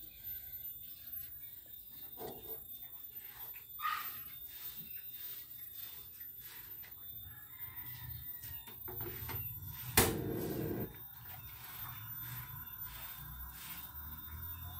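A rooster crowing faintly in the background. A single sharp click about ten seconds in is followed by a short burst of noise.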